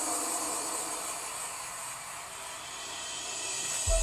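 Faint steady hiss of low background noise, with no distinct sound event.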